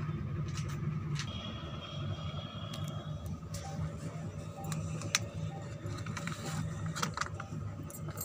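A thin disposable plastic cup crackling and clicking in the hand as it is squeezed to free a zucchini seedling's root ball. Irregular sharp clicks run over a steady low background rumble.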